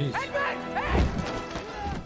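Film soundtrack: a heavy crash about a second in, over music, with shouted voices around it.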